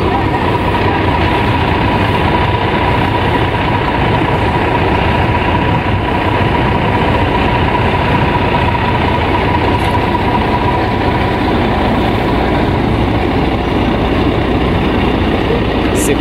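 Heavy vehicle's engine running steadily close by, with a thin steady whine over it that fades out about ten seconds in.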